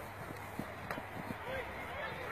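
Faint, distant voices of players and onlookers, with a few light knocks.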